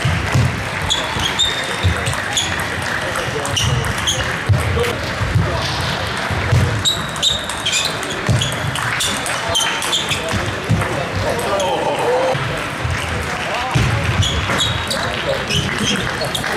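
Table tennis balls clicking against bats and table tops, the quick irregular ticks of rallies on several tables in a sports hall, over a background of voices.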